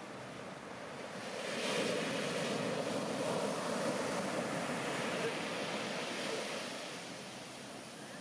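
Heavy shorebreak wave crashing onto the beach: the rush swells about a second and a half in, stays loudest through the middle, then fades as the whitewater washes up the sand.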